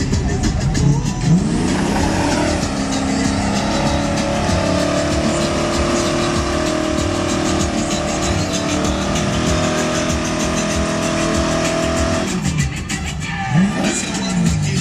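A Volvo 240-series estate doing a burnout: the engine revs up about a second in and is held at high revs while the rear tyres spin and squeal, then drops off and revs again near the end. Music plays underneath.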